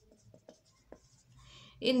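Marker pen writing on a whiteboard: faint, short strokes of the felt tip on the board, with a voice starting to speak near the end.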